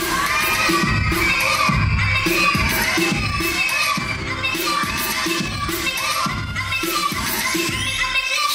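A live audience cheering with high-pitched shouts over loud dance music with a steady heavy beat. The shouting is strongest in the first few seconds.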